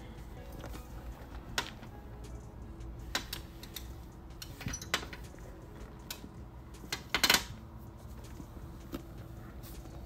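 Handling of a Louis Vuitton Galliera handbag: scattered light clicks and taps from its brass hardware and leather trim, the loudest a short cluster about seven seconds in, over a low steady hum.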